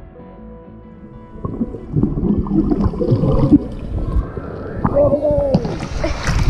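Muffled underwater churning and bubbling of water as a swimmer dives into a pool, heard through a camera held below the surface. It starts quiet and grows louder and rougher about a second and a half in.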